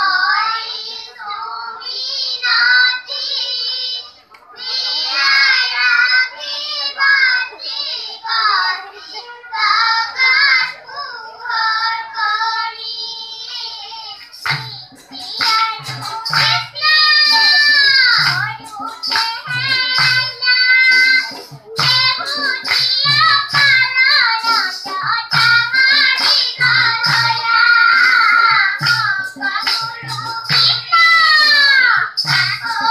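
A group of children singing together in unison. About halfway through, a barrel drum comes in with a steady beat, along with sharp claps, and the singing carries on over it.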